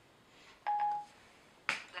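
Siri on an iPhone 5 sounding a short single-pitch electronic tone about two-thirds of a second in, after the spoken command "Annulla". A sharp click follows near the end.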